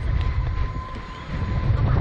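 Wind buffeting the microphone of the camera mounted on a SlingShot ride capsule as it swings through the air: a gusty low rumble that grows louder near the end, with a faint steady high tone running under it.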